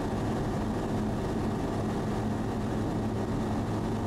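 Sling light aircraft's engine and propeller running steadily at climb power shortly after takeoff, heard inside the cockpit as a constant hum that keeps one pitch.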